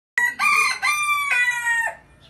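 Rooster crowing: one loud four-part cock-a-doodle-doo lasting nearly two seconds.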